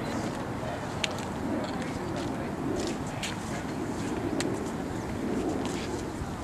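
Outdoor ambience of indistinct, murmured voices from people nearby, with a few sharp clicks scattered through it.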